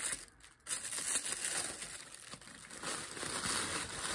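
Tissue paper and packing wrap crinkling and rustling as a handbag is unwrapped, with a short pause about half a second in.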